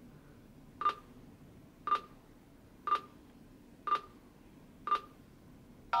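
F3K contest timer beeping once a second, five short beeps of the same pitch, counting down the last seconds of prep time. A longer, louder tone starts right at the end as the timer switches to test time.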